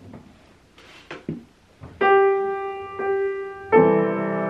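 Upright piano playing, starting about halfway in: a single note held, the same note struck again a second later, then a fuller chord with low notes near the end.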